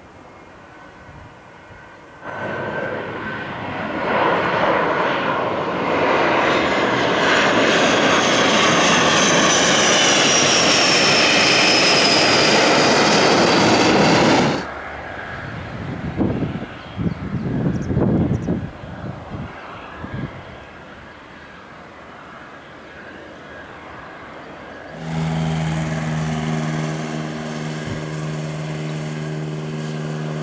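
Dassault Falcon 50's turbofan engines at takeoff power during a touch-and-go climb-out: loud jet noise with a high whine that falls slowly in pitch, cutting off abruptly about halfway through. Then a quieter stretch of uneven low rumbling, and near the end a steady droning hum with several pitches.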